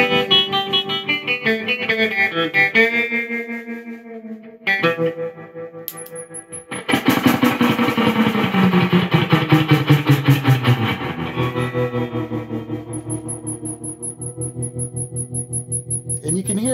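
Electric guitar played through a Vox AC15CH tube amp with its spring reverb turned up and the amp's tremolo pulsing about four times a second. Strummed chords ring out in a wash of reverb, and one big chord slides down in pitch as it fades. A faint high-pitched whistle comes in briefly and again near the end: the high-frequency oscillation that the boosted reverb return brings on, made worse by the tremolo.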